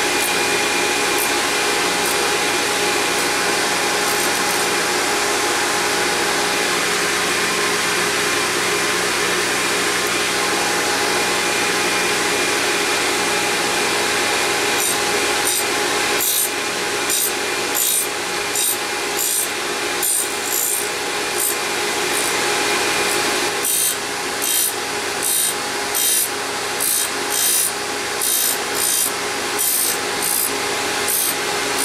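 Surface grinder running, its abrasive wheel grinding an Acme thread tool bit held in a tool-grinding fixture: a steady hum with a high grinding hiss. About halfway through, the hiss starts coming and going in even pulses, a little over one a second.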